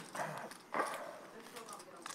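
Quiet poker-table room sound: short murmured voices, with faint light clicks as playing cards and chips are handled on the table.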